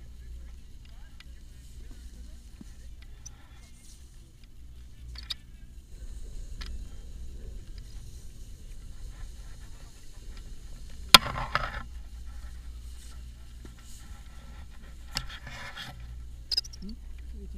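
Low wind rumble on a pole-mounted action camera's microphone, with scattered handling clicks and one sharp knock about eleven seconds in.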